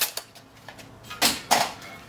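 Brief handling noises from a sawn-in-half wheel and a tape measure: a click at the start, then a few short rustling scrapes a little after a second in and again near the end.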